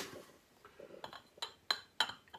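Glass spice jar clinking against the neighbouring jars and shelf as it is set in place on a spice rack: a few light, sharp clinks in the second half, the loudest about three-quarters of the way through.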